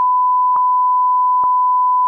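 A steady, pure censor bleep tone at one pitch, held unbroken for nearly three seconds over the caller's words, with two faint clicks under it, about half a second and a second and a half in.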